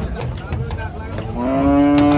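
Cattle lowing: one long, steady moo that starts about a second and a half in, over general background noise.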